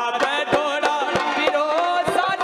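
Live Rajasthani folk music: a gliding melody carried over quick, frequent hand-drum strokes, with a keyboard or harmonium accompanying.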